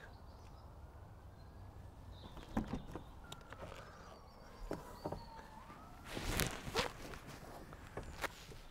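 Quiet footsteps with scattered small knocks and clicks, and a louder rustling scrape about six seconds in.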